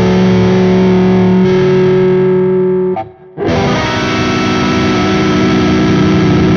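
Distorted electric guitar through effects playing a lick. Notes ring and sustain for about three seconds, cut off briefly, then a dense, full sustained passage comes back.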